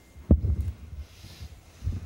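Low thumps of a handheld microphone being handled: a sharp bump about a third of a second in with a short rumble after it, and a softer bump near the end.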